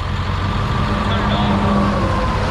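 Truck engine idling: a steady low rumble with a faint steady whine above it.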